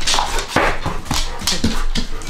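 A pet dog vocalizing in a string of short, noisy whining yips, as if answering a question.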